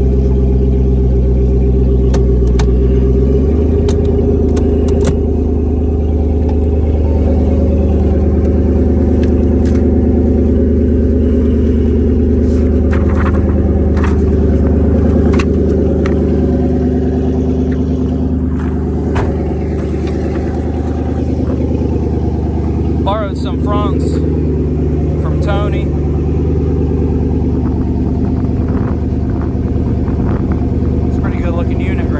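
Twin-turbocharged Coyote 5.0 V8 of a 2014 Mustang heard from inside the cabin, running steadily while driving slowly; its note changes about three seconds in. A few sharp clicks sound over it.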